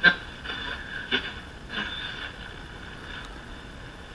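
A Silvertone 1704 tube radio being tuned between stations: a low steady hiss of static, with brief faint snatches of signal about a second in and again near two seconds.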